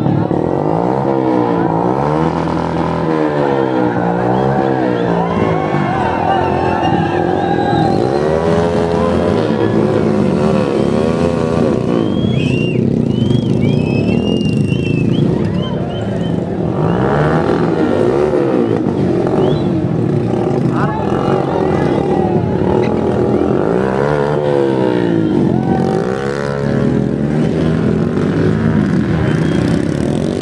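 Motorcycle engines revved hard over and over during stunt riding, the pitch swinging up and down every second or two.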